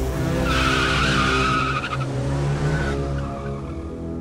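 Car tyres squealing in a skid from about half a second in until about two seconds, with a brief return shortly after, over steady background music.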